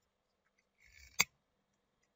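A brief faint rustle, then a single sharp click a little over a second in.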